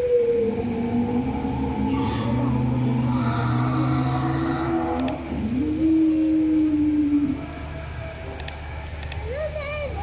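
Dinosaur roar sound effects played in an indoor dinosaur exhibit: two long, low moaning calls. The first is held for about four seconds; the second rises and holds for about two seconds before stopping abruptly.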